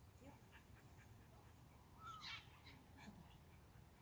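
Near silence: faint outdoor background with a few soft ticks and one brief, faint call about halfway through.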